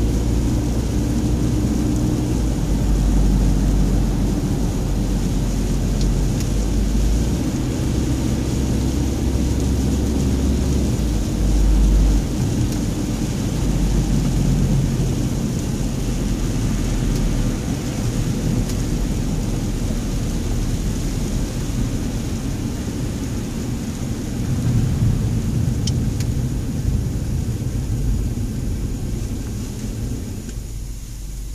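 Road noise heard from inside a car driving on a wet, slushy road: a steady low rumble of tyres and engine that eases off near the end as the car slows.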